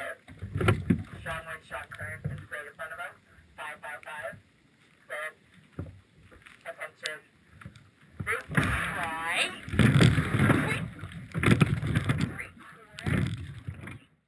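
Strong wind buffeting the microphone in a rowing shell, heaviest in the second half, while a coxswain calls short commands such as "square up" and "attention".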